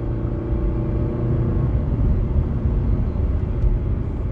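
A car driving on an oil-gravel road: a steady low rumble of tyres and running gear.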